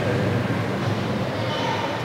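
Steady low rumbling background noise with no clear speech.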